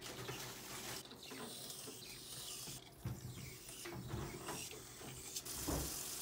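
Back-flushing a Sawyer Squeeze water filter with its plastic syringe: the plunger rubbing in the barrel as hot water is forced back through the filter, with a few soft knocks.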